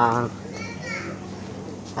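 A woman's voice trailing off, then faint children's voices chattering in the background.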